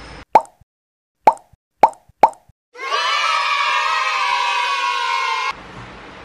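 Four quick cartoon pop sound effects over dead silence, then a bright, many-toned sound effect swelling for about three seconds and cutting off suddenly.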